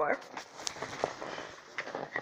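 A spoken word trailing off, then a quiet room with a few faint, short clicks.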